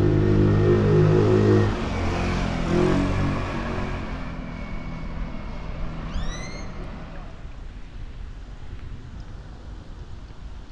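A motor vehicle's engine running close by with a steady low hum, then shifting in pitch and fading away over several seconds as it moves off. About six seconds in there is a brief high chirp.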